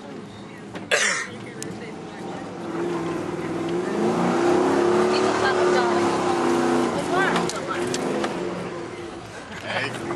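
Range Rover Classic's Rover V8 engine heard from inside the cabin, working harder as the truck climbs a dirt slope off-road; its note builds over a few seconds, holds, then eases near the end. A sharp knock comes about a second in.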